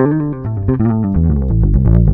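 Fender electric bass played fingerstyle through an amp: a quick run of single plucked notes stepping down in pitch, loudest on the low notes at the end.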